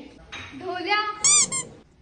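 A short, high-pitched squeak about a second and a quarter in: one squeal that rises and falls in pitch within under half a second. Before it there is a faint murmur of voice.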